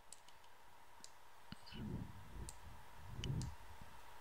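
Faint computer-mouse clicks, several short sharp ones scattered over a few seconds, as a software knob is adjusted.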